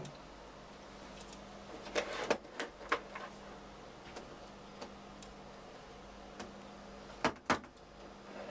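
A few sharp clicks and knocks from lab equipment being handled, a cluster about two to three seconds in and a louder pair near the end, over a steady low equipment hum.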